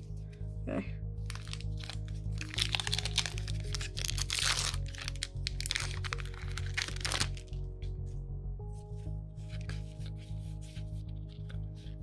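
Yu-Gi-Oh booster pack's foil wrapper crinkling and tearing open in several loud crackling bursts over the first seven seconds or so. Lighter rustling of cards being handled follows near the end, over steady background music.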